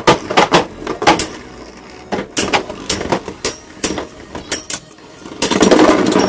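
Beyblade Burst tops clashing in a plastic stadium: the Astral Spriggan prototype and Cyclone Ragnarok strike each other and the stadium wall in a run of sharp clicks and knocks. Near the end comes a dense clatter as Cyclone Ragnarok bursts apart.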